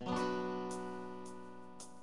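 A strummed guitar chord, struck sharply and left ringing, slowly fading, with a few light strokes on the strings: the introduction to a song.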